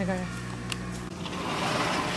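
A steady low hum, which stops about a second in and gives way to a rising rushing hiss.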